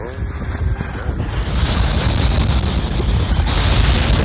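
Wind buffeting the microphone of a camera moving down a ski slope: a loud, steady low rumble with a rushing hiss above it.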